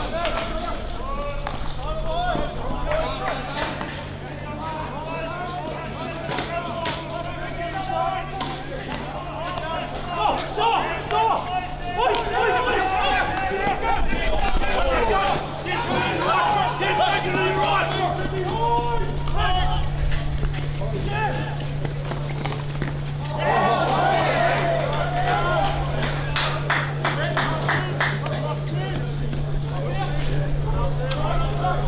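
Indistinct voices calling and talking at a field hockey match, over a steady low hum. A quick run of sharp clicks comes near the end.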